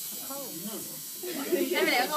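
A steady high hiss runs throughout, under a short "no" and then voices and laughter from a little past halfway.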